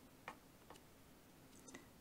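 Near silence, with about three faint ticks from a thin wooden stick pressing shapes into soft dough.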